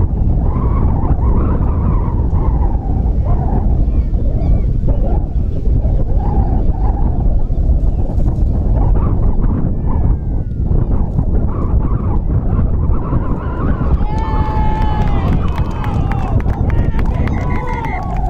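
Strong wind buffeting the microphone in a steady, loud rumble, with distant shouting from players and spectators on top, a louder burst of voices about two-thirds of the way in.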